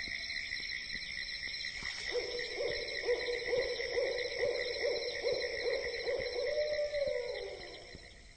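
Insects trill steadily in high, finely pulsing bands. From about two seconds in, a low hooting call runs over them, pulsing rhythmically, then slides down in pitch and fades near the end.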